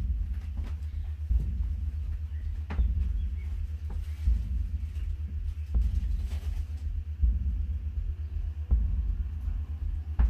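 Low, fluctuating rumble of wind buffeting the microphone, with a few faint knocks.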